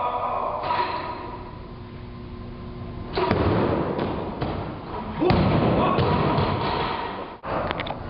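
Steel barbell loaded with 185 kg of bumper plates: a thud and rattle about three seconds in as the lifter drives it overhead into a split jerk, then the loudest thud about five seconds in as the bar is dropped onto the platform, the plates bouncing and rattling for about two seconds.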